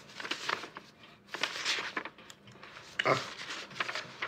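Loose sheets of paper being handled and turned over, in a series of short rustles, the longest about one and a half seconds in.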